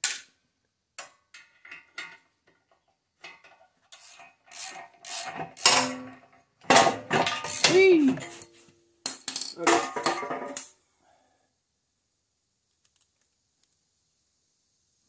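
Metal clinking and clattering as the exhaust bolts are worked loose with a socket wrench and the exhaust is pulled off a Kohler Courage lawn-tractor engine. The clanks come in a string of separate knocks, loudest in a busy stretch between about seven and eleven seconds in, then stop.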